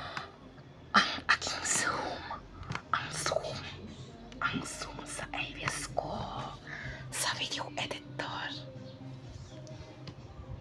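A person whispering in short breathy phrases, with a few sharp clicks among them, over a faint steady low hum.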